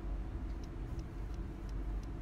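An engine running steadily in the background, a low rumble with a few faint ticks.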